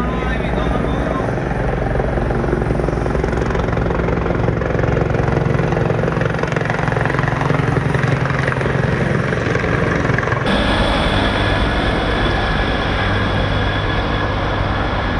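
Police helicopter flying low overhead, its rotor beating steadily. About ten seconds in the sound changes abruptly to a second recording of a helicopter overhead.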